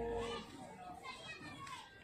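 A sustained musical note cuts off about half a second in, followed by faint children's voices chattering.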